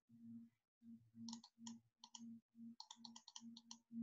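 Faint computer mouse clicks, a run of them starting about a second in and coming faster in the second half, as the PDF is paged back with the scrollbar's up arrow. A faint low hum cuts in and out beneath them.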